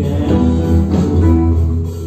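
Live band playing a blues-rock groove: guitar over electric bass and drums, with keyboard, sustained notes over a strong bass line.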